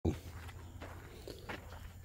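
Footsteps on the ground: a few soft, uneven steps. A short sharp knock comes at the very start.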